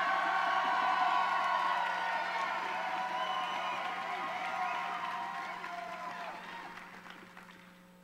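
A large crowd cheering and applauding, with many shouting and whooping voices over the clapping. It is loudest at the start and dies away gradually over the last few seconds.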